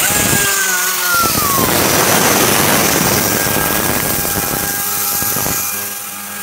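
Würth Top Gun tornado-effect cleaning gun blasting compressed air and engine cleaner over an engine bay: a loud, steady hiss of air that starts abruptly, with a whine falling in pitch over the first second and a half.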